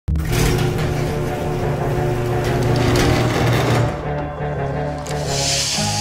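Trailer soundtrack music built on sustained low notes, dense for the first four seconds and then thinning out. A hissing swell builds near the end.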